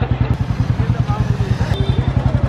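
Motorcycle engine running at low speed in traffic: a steady, rapid run of even firing pulses. A short high-pitched beep sounds near the end.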